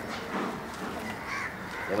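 A crow cawing.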